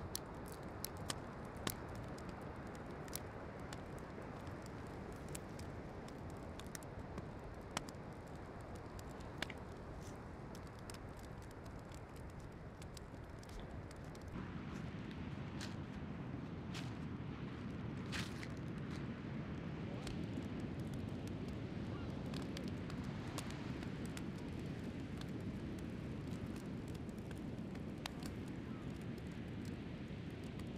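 Small wood campfire crackling with sharp, irregular pops over a steady outdoor hiss. About halfway through, a louder steady rush of breaking ocean surf takes over, with a few pops still heard.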